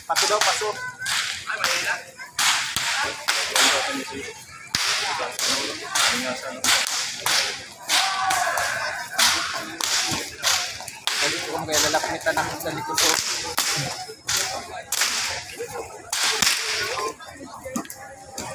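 A rapid, irregular series of sharp cracks, two or three a second, over a murmur of voices.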